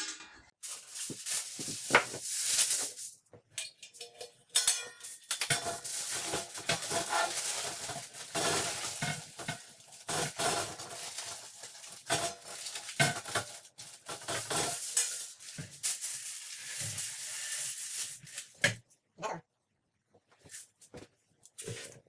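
Aluminium foil crinkling and rustling in irregular spells as it is folded and pressed by hand around a round metal heat-deflector plate. The sound thins to a few short crackles near the end.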